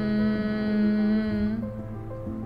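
A woman holding one long, steady closed-mouth hum, the bhramari "humming bee" breath of yoga, which fades out about one and a half seconds in. Soft background music plays beneath it.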